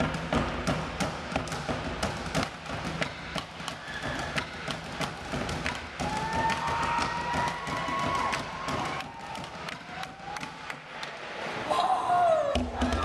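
Bucket drumming: drumsticks striking upturned plastic buckets in a fast, steady rhythm of sharp hits.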